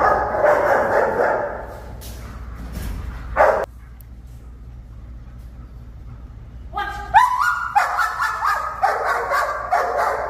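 Protection-trained German Shepherd barking: a loud flurry of barks at the start, a single bark about three and a half seconds in, then rapid repeated barking from about seven seconds on.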